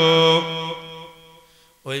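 A preacher's melodic sermon chant: a man's voice holds one long, steady sung note that fades away over the first second and a half. After a brief pause, the chanting starts again just before the end.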